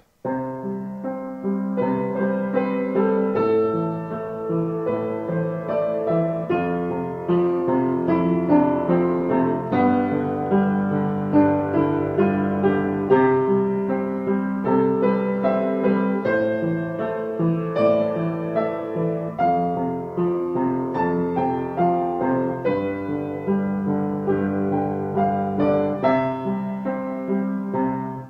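Piano playing an example improvisation: a right-hand melody over a slow, ballad-style accompaniment, with notes sounding steadily throughout.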